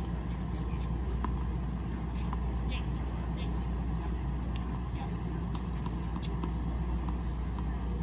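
Outdoor background noise: a steady low rumble with faint distant voices and a few light taps, and no racket strikes.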